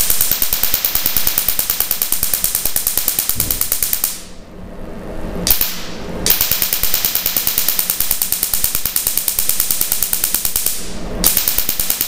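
Tattoo-removal laser handpiece firing on the skin: a fast train of sharp snapping clicks, one per pulse, in runs that break off briefly about four seconds in and again near the end.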